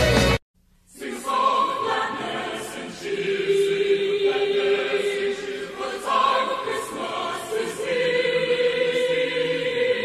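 Recorded music cuts off abruptly about half a second in. After a brief gap, a choral Christmas song begins, with the voices holding long sustained notes.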